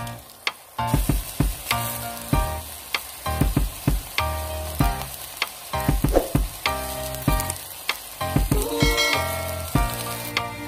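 Pork mince with diced potato and carrot sizzling as it fries in a pot, under background music with a steady beat.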